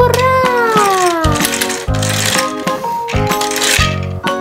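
Background music with plucked notes. About a second-and-a-half whistle-like pitch glide that rises briefly, then falls away opens it, and a rattling, shaker-like hiss runs through the second half.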